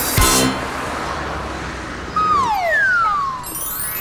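A short musical sting cuts off just after the start, leaving a steady wash of road-traffic noise. About two seconds in, a cartoon falling-whistle sound effect slides down in pitch, and near the end a quick, high twinkling chime run rises.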